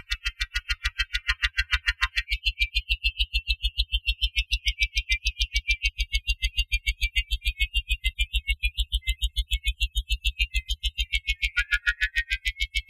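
Electronic tone made by the TugSpekt spectral plugin resynthesizing a crescent-moon image. It is a rapid, even pulse of deep bass thumps under a glittering cluster of high tones. The high cluster dips lower about a second and a half in, then jumps back up and drifts.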